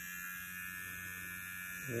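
Manscaped Lawn Mower 3.0 cordless electric body trimmer running, a steady high buzz over a low hum, quieter than some trimmers.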